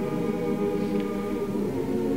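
Slow choral music: voices holding long, steady chords.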